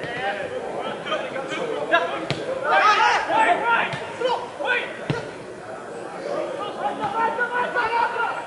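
Footballers' voices calling out across the pitch in a sparsely filled stadium, several at once, with one sharp thud of a ball being kicked about five seconds in.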